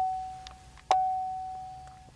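A 2014 Chevrolet Impala's dashboard warning chime, a single-pitched electronic ding repeating about every second and a quarter. Each ding fades out; a new one sounds about a second in.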